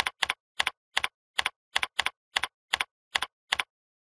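Computer keyboard keystrokes typing text into a form field: about ten evenly spaced keystrokes, each a quick double click, two to three a second, stopping shortly before the end.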